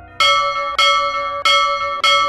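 Temple bell struck over and over at an even pace, about three strikes in two seconds, each ringing on into the next.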